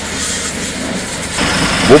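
Water spraying from a hose onto a mud-caked tractor, a steady hiss over a low machine hum. About one and a half seconds in the sound changes to a deeper engine hum with a thin high whine.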